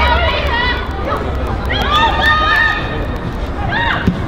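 Voices shouting and calling out across a football pitch during play, in three short spells, over a steady low rumble.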